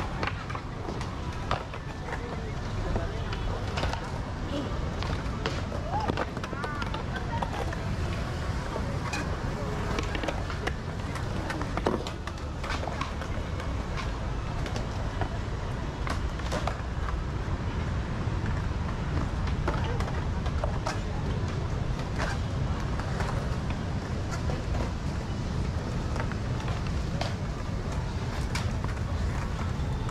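Skateboards rolling and clacking on a concrete skatepark: sharp knocks and slaps of boards and wheels scattered throughout over a steady low rumble, with indistinct voices of people around.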